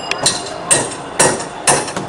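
Hammer driving big nails, struck at a steady pace of about two blows a second, four blows in all.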